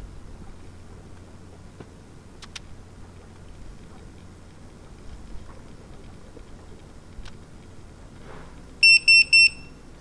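PEM hydrogen water bottle's electronic beeper giving three short, high beeps in quick succession near the end, signalling that its five-minute electrolysis cycle has finished. Before the beeps there is only a faint low steady hum.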